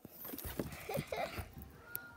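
Rustling and handling noise from a phone being jostled about, with a few short vocal sounds from a girl.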